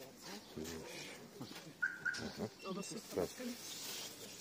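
Low, indistinct talk between people, with a couple of short high chirps about two seconds in.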